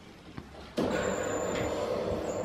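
Electric roller shutter motor starting just under a second in and running with a steady hum and a thin high whine as the shutter over the patio door moves.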